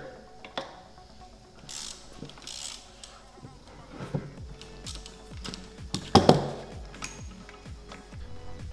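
Hand ratchet with an inverted Torx socket clicking and tapping on the connecting-rod cap bolts of an aluminium engine block as they are loosened, with a sharper metal knock about six seconds in.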